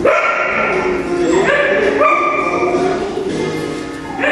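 Music with long held notes, changing pitch every second or so.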